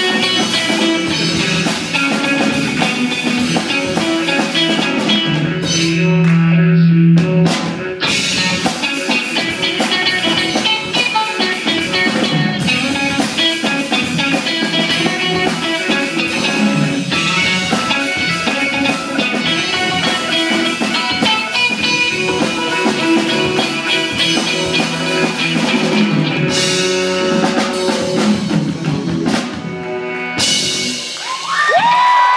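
Live rock band playing: electric guitars, bass guitar and drum kit together, with a held low note about six seconds in.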